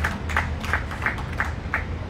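Audience clapping in a steady rhythm, about three claps a second, over a low steady hum.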